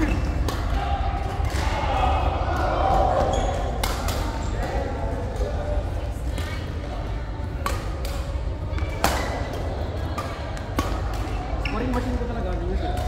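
Badminton rackets striking a shuttlecock in a rally: sharp cracks every second or two, over a steady low hum and voices.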